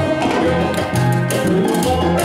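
Live Latin dance band playing, with a moving bass line, keyboard chords and percussion keeping a steady beat, in a stretch without singing.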